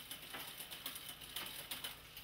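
Bicycle chain running through the rear derailleur and over the cassette as the drivetrain turns, a quick irregular ticking of chain on cogs. The barrel adjuster is being turned to add cable tension because the chain has not yet shifted up to the next cog.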